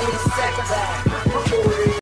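Hip-hop outro music with a beat of deep kick-drum hits that drop in pitch, about seven in two seconds.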